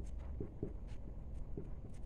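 Marker pen writing figures: a series of short, faint scratching strokes over a low steady hum.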